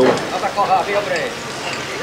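Mostly speech: a quieter stretch of a man's voice talking, over steady outdoor background noise.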